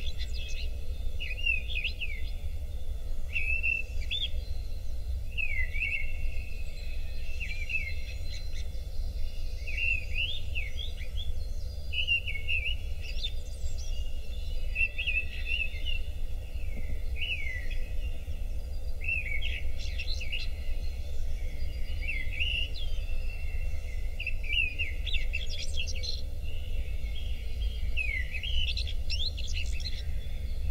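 Birds singing and calling, with many short chirps and quick whistled rising and falling notes one after another, over a steady low rumble.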